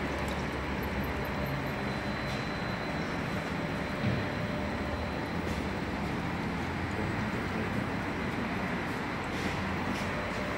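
Steady workshop background noise: a low hum under an even hiss, with a single light knock about four seconds in.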